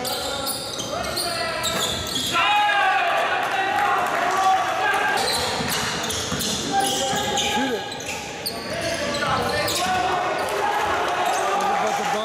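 A basketball dribbled and bouncing on a hardwood gym floor during play, with players' indistinct voices, all echoing in a large gym.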